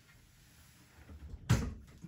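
A single sharp clack about one and a half seconds in, after a second of quiet and some faint handling sounds: the turntable's power plug being pulled from the outlet.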